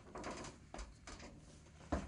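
Faint knocks and scuffs of a person climbing the metal side ladder onto the rear bed of a Unimog truck, with a sharper clunk near the end.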